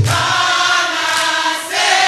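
A group of voices singing a gospel song together, carrying the line while the lead singer's low voice drops out; a new held note comes in near the end.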